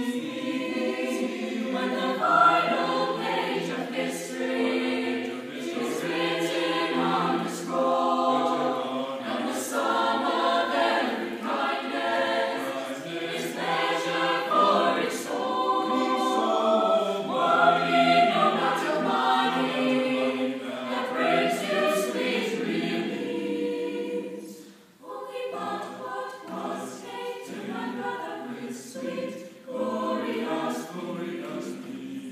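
Mixed choir of teenage boys and girls singing. The singing breaks off briefly about 25 seconds in and then continues more quietly.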